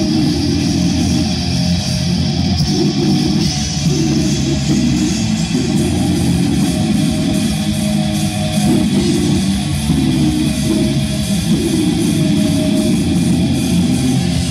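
Heavy metal band playing live and loud, with distorted electric guitar, bass and drums going without a break.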